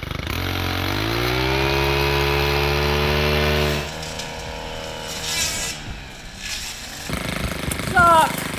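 Gas-powered brushcutter engine revving up and held at high speed for about three seconds, then cutting off abruptly; quieter, indistinct sounds follow.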